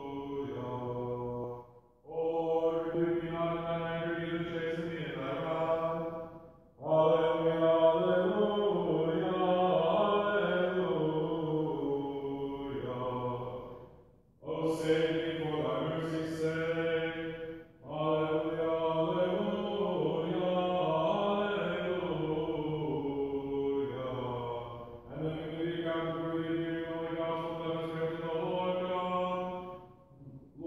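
Liturgical chanting by a singing voice: long phrases held mostly on level notes, each lasting several seconds, with brief pauses for breath between them.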